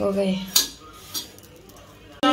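Metal spatula knocking against a flat pan on the stove while bread is turned and toasted: two sharp clinks a little over half a second apart. A brief voice sound comes right at the start.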